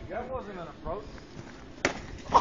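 Faint voices talking, then a single sharp thump near the end.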